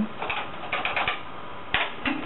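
BBC Micro keyboard being typed on: a quick run of key clicks entering a short command, then a single louder keystroke near the end.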